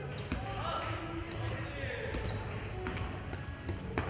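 Basketball dribbled on a hardwood gym floor: irregular bounces echoing in a large hall, with players' voices calling in the background.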